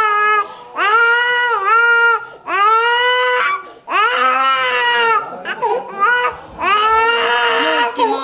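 Toddler crying hard in a run of long wails, about five of them, each a second or so long with short catches of breath between.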